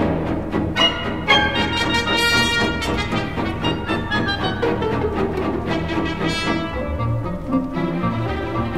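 Orchestral music with brass and strings playing held notes, one line falling slowly in pitch through the middle.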